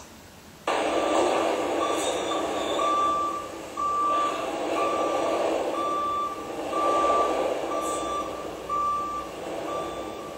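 Vehicle reversing alarm beeping evenly, about one beep a second, over the steady running of a farm vehicle's engine in a barn.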